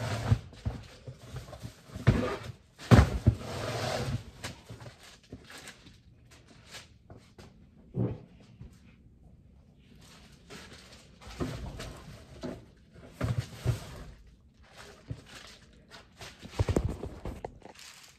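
Belongings being handled and moved about: irregular knocks, thuds and rustling, with footsteps, in a small echoing room.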